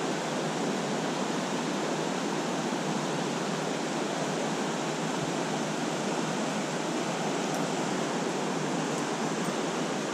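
Shallow trout stream running over riffles: a steady, even rush of water.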